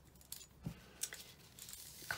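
Faint handling sounds of craft tools on a cutting mat: a few light taps and clicks, with a soft thump about two-thirds of a second in.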